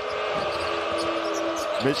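A basketball being dribbled on a hardwood court amid the steady din of an arena crowd, with a held tone in the crowd noise that fades out near the end.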